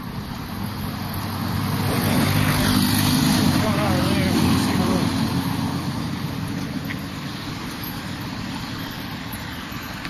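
Road traffic with a large coach bus passing close by: its engine and tyre noise swell to a peak a few seconds in and fade away as it goes past, with wind buffeting the microphone.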